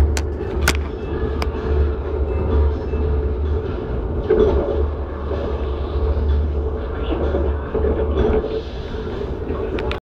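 Steady low rumble of the Kuala Lumpur airport express train heard from inside its carriage while it runs, with a few sharp clicks in the first second and a half.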